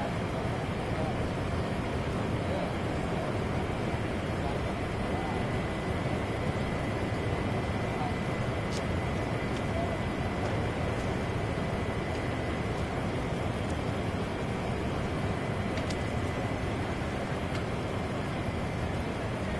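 A steady, even roar of outdoor noise with faint voices mixed in. A thin high steady tone comes in about four seconds in and fades out near the end.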